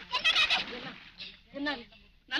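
Actors' voices on an old film soundtrack crying out in loud, wavering exclamations, then one short cry near the end.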